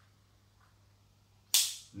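Near silence, then, about a second and a half in, a single sharp snap with a short hissing fade.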